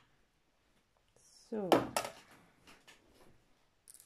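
Mostly a woman's voice saying a drawn-out 'So'. Right after it comes one sharp click, then a few faint ticks and taps from handling the cross-stitch hoop, needle and thread.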